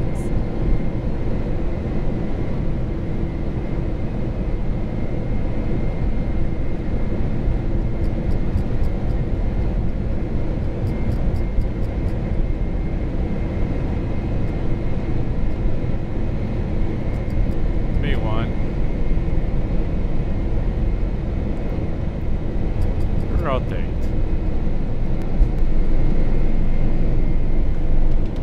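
Cockpit noise of a four-engine Boeing 747 during its takeoff roll: the engines at takeoff thrust and the runway rumble make a steady loud roar that grows a little louder near the end.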